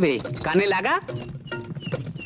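A voice with wide sliding pitch sweeps, followed about a second in by soft background music with held notes.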